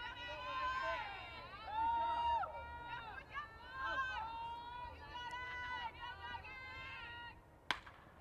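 High-pitched young voices of softball players chanting and cheering in a sing-song way, several overlapping. Near the end comes one sharp crack of the bat striking the softball for a line-drive base hit.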